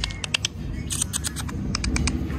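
Light, irregular clicks and rustles from a horse moving about its straw-bedded stall, with a small cluster of clicks about a second in and a few more near the end.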